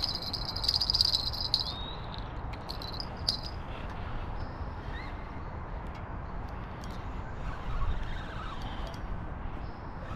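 A cricket's steady high trill that stops suddenly about two seconds in, with a fainter trace fading out soon after. Under it runs a low even outdoor rumble, with a short rising chirp about five seconds in.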